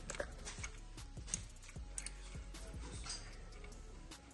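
Light metallic clicks and taps of steel bolts being handled and threaded by hand into the holes of a diesel injection pump gear, scattered irregularly over a steady low hum.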